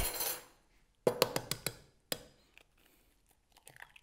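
Egg being cracked: a quick run of sharp knocks against a hard edge about a second in, another single knock about two seconds in, then faint soft sounds near the end as the shell is pulled apart over the jug.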